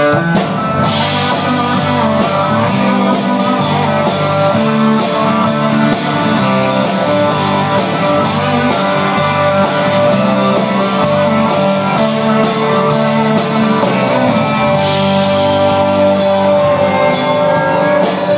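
Live country-rock band playing an instrumental intro on acoustic and electric guitars, drum kit and keyboard, with a steady drum beat. The full band comes in at once at the start.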